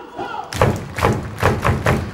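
A quick, uneven run of about six heavy thumps that start about half a second in, heard over stadium music and voice from the PA.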